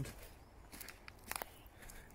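Footsteps on dry leaf litter and twigs: a few soft, irregular crunches, the clearest about halfway through.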